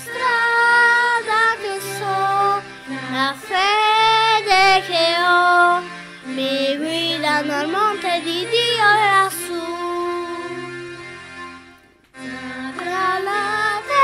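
Recorded Christian children's song: a high child-like voice singing a melody over instrumental backing with sustained bass notes. About ten seconds in the music fades out, drops almost to silence briefly at about twelve seconds, and then starts again.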